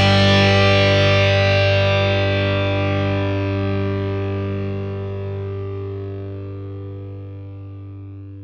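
Background music: one distorted electric guitar chord held and ringing out, slowly fading away.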